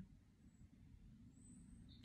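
Near silence: low room tone, with a faint, high, short bird chirp about a second and a half in.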